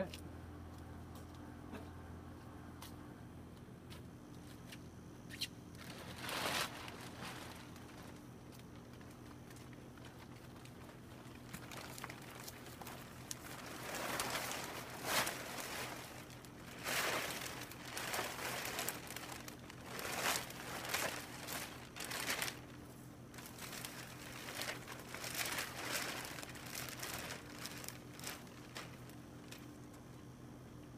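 A large plastic cover sheet crinkling and rustling in irregular bursts as it is shaken out and draped over a PVC frame, starting about six seconds in and busiest in the second half.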